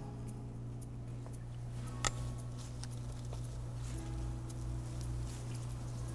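Soft handling of flower stems and leaves on a work table, with scattered faint ticks and one sharp click about two seconds in, over a steady low hum.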